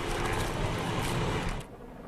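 Street traffic noise, a steady rush of passing vehicles that drops away about one and a half seconds in.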